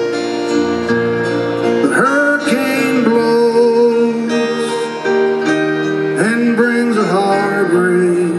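Live slow ballad from a full band: strummed acoustic guitar over sustained strings and keyboards. A male lead vocal comes in about two seconds in and again about six seconds in.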